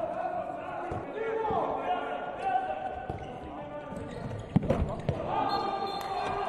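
A handball bouncing on an indoor court floor, with a cluster of sharp hits about four and a half to five seconds in, amid players' shouts in a large hall.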